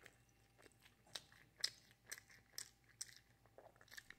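Faint chewing of food, heard as soft mouth clicks about twice a second.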